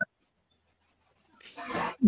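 Mostly silence on a video-call audio feed, ending with a short breathy rush of noise about a second and a half in, just before a woman resumes speaking.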